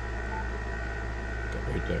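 Steady electrical hum and hiss, with a faint high whine, from the powered-up Yaesu FT-891 transceiver and bench gear; a short, faint beep sounds about a third of a second in as a front-panel button is pressed.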